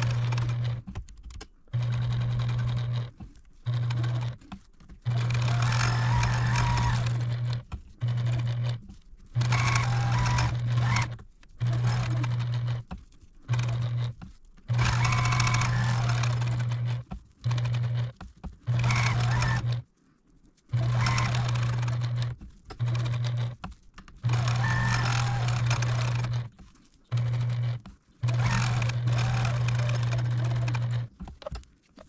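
Electric domestic sewing machine stitching a quilted potholder in short runs of one to three seconds. The motor hums at a steady pitch, then stops briefly as the fabric is turned to follow the next quilting line, about fifteen times over.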